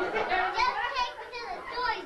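Young children's voices talking and calling out, with no words a listener can make out.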